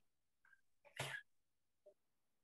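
Near silence broken by one short, sharp burst of noise from a person about a second in, like a sneeze or cough picked up on a call microphone.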